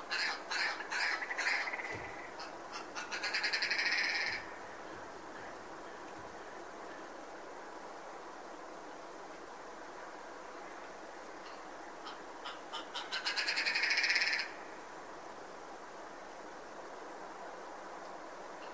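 Red grouse calling twice. Each call is a run of notes that speed up into a rapid rattle, the first right at the start and the second about twelve seconds in, over a steady background hiss.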